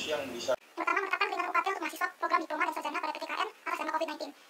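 Speech only: a voice talking quickly, after a short break in the sound about half a second in.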